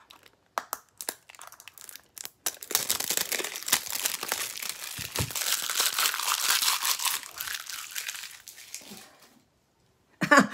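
Product packaging crinkling as it is handled and unwrapped: a few light clicks at first, then about six seconds of dense crinkling that stops shortly before the end.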